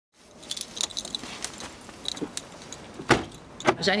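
Rummaging in an open car boot: scattered light metallic jingling and clicks, then two heavy thumps about half a second apart near the end.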